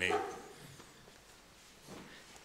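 A man's spoken word trails off and fades in room reverberation over the first half second. Then comes a quiet pause of faint room tone.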